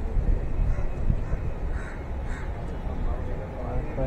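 Crows cawing, two calls about two seconds in, over a low steady outdoor rumble.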